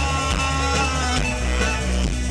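Rock band playing live through a festival PA, heard from within the crowd: a steady drum beat under sustained bass notes and a keyboard.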